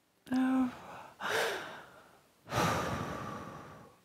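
A woman's short voiced hum, then two breathy exhales, the second longer and fading out, close to a headset microphone.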